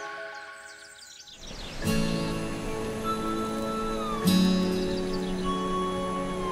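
Background music. One track fades out, a swell of noise rises, and a new track with long held notes begins about two seconds in.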